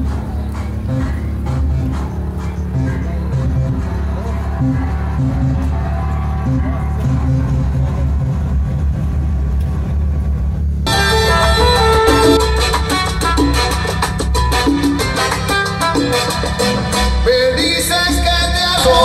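Latin salsa-style music played loud through a DB Drive car audio system, with strong bass. The sound is muffled at first, and about eleven seconds in the treble suddenly comes through clear and bright.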